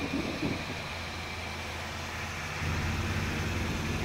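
Steady low hum of an idling car engine, getting louder about two and a half seconds in.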